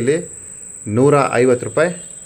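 A man speaking one short phrase near the middle, with a thin, steady high-pitched tone running underneath without a break.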